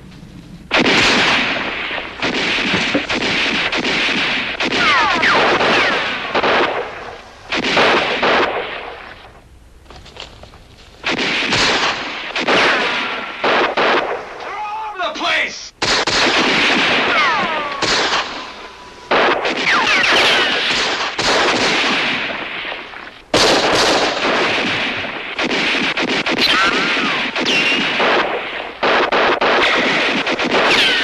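Gunfight sound effects: rifle shots and rapid bursts of fire, with ricochet whines that fall in pitch. The firing dies down briefly twice.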